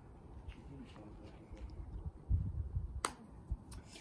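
A wooden croquet mallet strikes a ball once with a sharp knock about three seconds in, followed shortly by a fainter knock.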